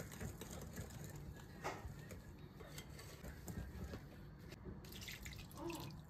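Wire whisk stirring flour into a wet batter in a glass bowl: faint wet stirring with small ticks.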